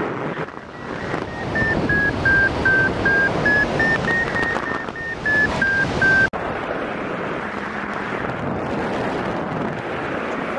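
Paraglider variometer beeping: a quick run of short tones, about three a second, whose pitch dips, rises and dips again, the vario's signal of climbing in lift. Steady wind noise on the microphone runs underneath. The beeps cut off abruptly about six seconds in, leaving only the wind.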